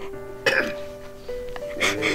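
Soft background music of held, sustained notes, over a girl crying: two short, sharp sobbing gasps, about half a second in and near the end.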